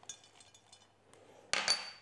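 Toasted pine nuts tipped into a stainless-steel mini chopper bowl: faint light rattling, then a brief clatter with a short metallic ring about one and a half seconds in.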